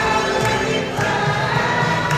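A large crowd singing together in unison, many voices holding and changing notes as one.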